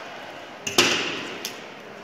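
A sudden knock against a stainless steel sink as a bone is being cleaned over it, ringing and fading over about half a second, with a lighter click just before and a small one after.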